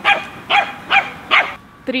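Small dog barking four times in quick succession, about two barks a second.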